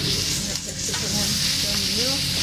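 Noodles sizzling steadily on a hot teppanyaki griddle while a chef stirs and tosses them with spatulas.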